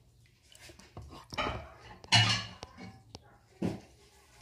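Metal spoon scraping and tapping inside an opened cardboard cream carton, in a few short separate strokes, the loudest about two seconds in.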